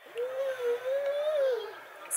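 A voice holding one long, slightly wavering note, like a sung or hummed 'ahh', for about a second and a half, dropping in pitch at the end.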